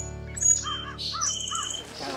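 Bird calls: a few short high chirps and three quick arched calls about a second in, over soft background music with held notes.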